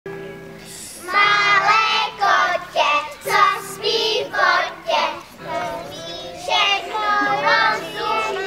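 A group of young children singing a song together, starting about a second in, over a steady musical accompaniment.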